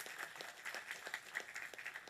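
Audience applauding, faint and fairly thin, a spatter of many separate hand claps.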